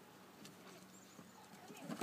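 Quiet outdoor sounds with faint voices, and a louder voice rising near the end.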